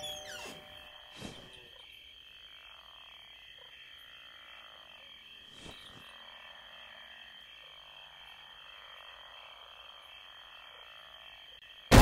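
Faint outdoor night ambience of frogs croaking over a steady, evenly repeating high chirring, with two faint short knocks, one about a second in and one halfway through.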